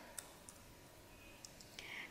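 A few faint computer keyboard keystrokes, typing a short word, against near silence.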